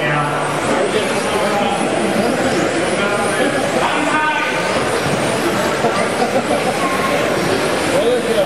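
Several electric 1/10-scale RC touring cars with 10.5-turn brushless motors racing, a continuous whine of motors and drivetrains echoing in a large hall. An indistinct announcer's voice is heard over it.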